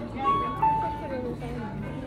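Electronic chime: a few clean beeping tones stepping down in pitch in about the first second, over background chatter.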